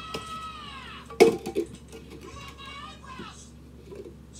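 A plastic cup clicking sharply onto a stacked tower of plastic cups about a second in, with a lighter tap just after. Over it a voice slides down in pitch, and later another slides up.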